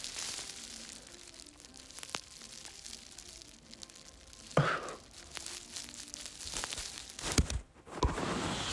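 Handling noise from a phone held in the hand: soft rustling and scattered clicks over a low room hiss. The rustling grows louder with a few sharp clicks near the end as the phone is moved, and there is one short breath-like sound about halfway through.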